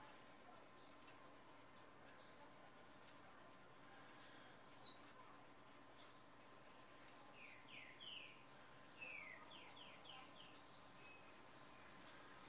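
Faint scratching of a green coloured pencil shading on paper. A few short, falling bird chirps sound over it, the loudest about five seconds in, the rest in a group in the second half.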